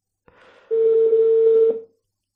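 A telephone ringback tone: one steady low beep about a second long, over faint line noise, then it stops.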